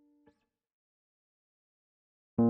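Near silence: the faint tail of a background-music note dies away just after the start, with a faint click, then dead silence.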